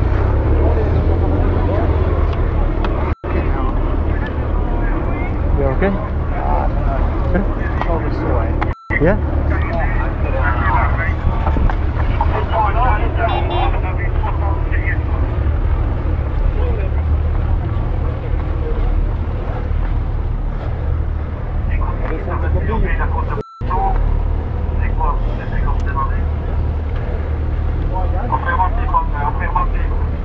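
Indistinct voices of several people over a steady low rumble, with the sound dropping out briefly three times.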